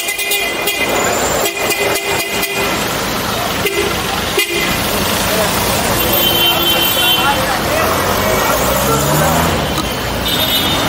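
Congested street traffic heard from a bicycle: engines running close by, with car horns honking in two stretches, about a second and a half in and again around six seconds.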